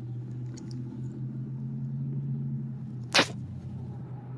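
A steady low hum with evenly spaced overtones, with one short sharp rustling scrape about three seconds in.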